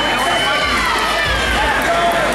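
Crowd chatter: several people talking and calling out at once, over a steady low rumble.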